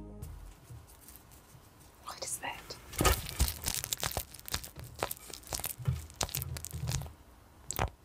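Bearded dragon chewing a crunchy food item close up to a microphone (ASMR style): a quick run of crackling crunches starting about two seconds in and lasting some five seconds, with one last crunch near the end.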